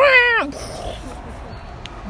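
A child's voice making one falling "pew" blaster sound effect by mouth, about half a second long at the start, followed by faint background hiss.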